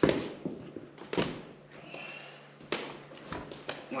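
A lifter's short, sharp breaths and movement noises while setting up under a barbell for a maximum bench press attempt; three short bursts come a second or more apart, with light taps between.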